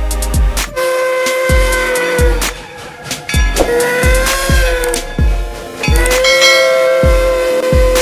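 Background music with a steady thudding electronic beat, over which a steam locomotive's whistle sounds in three long held blasts.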